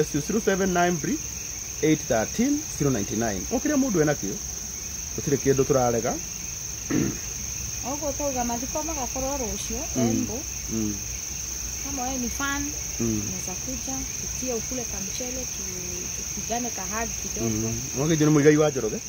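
Crickets chirping, a steady high-pitched trill that runs without a break under intermittent low talk.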